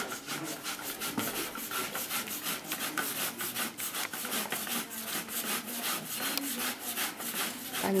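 Apples being grated on a hand grater into a metal pot in quick, even rasping strokes, several a second, for strudel filling.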